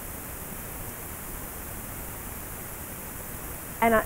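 Steady background hiss with nothing else in it; a woman's voice starts right at the end.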